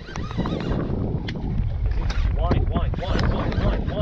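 Wind buffeting an open microphone in a steady low rumble, with faint voices in the background.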